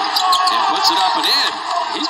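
Basketball game audio from a hardwood court: a basketball bouncing and short sharp court noises, under a continuous talking voice.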